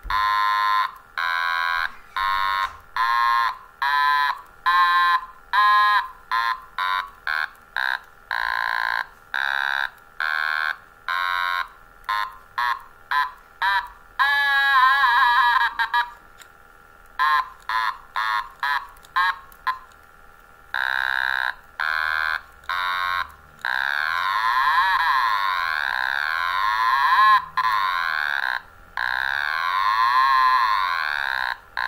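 Otomatone electronic toy instrument being played: a run of short separate notes, roughly two a second. About halfway through comes a fast-warbling note, and near the end long sliding, wavering notes.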